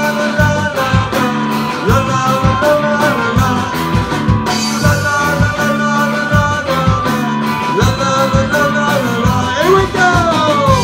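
Live rock band with electric guitars, electric bass and drum kit playing a ska-rock song, the drums keeping a steady beat under sustained lead notes. Near the end a lead note bends up and then slides down.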